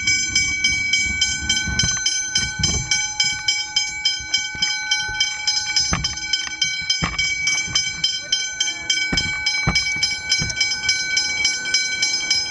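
Westinghouse hybrid electronic level-crossing bells ringing in a rapid, steady, evenly repeating ding. They are sounding the warning of an approaching train as the crossing activates and the boom gates begin to lower.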